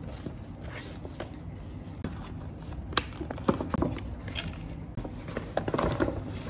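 Stiff paper shopping bag being handled: faint scattered rustles and crinkles of paper, with a sharper click about three seconds in.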